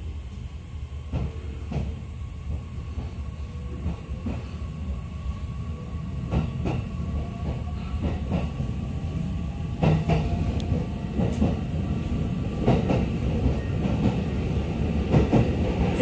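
Inside a JR East E501 series electric multiple unit picking up speed: a low running rumble that grows louder, with faint motor tones and wheels knocking over rail joints, the knocks coming more often.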